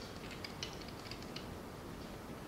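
Faint, light clicks from a computer mouse and keyboard, a scattered run of quick ticks over low room tone that thins out after about a second and a half.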